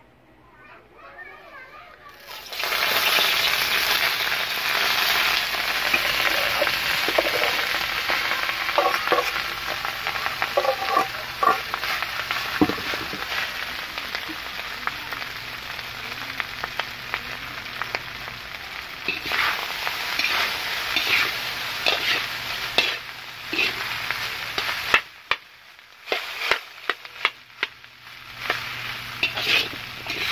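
Cooked rice being stir-fried into sinangag (Filipino fried rice) in a hot metal pan: steady sizzling, with the spatula clicking and scraping against the pan as it turns the rice. The sizzle starts about two seconds in and breaks off briefly twice near the end.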